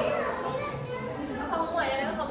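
Toddlers playing and babbling, mixed with adult voices chattering, with a child's higher voice rising near the end.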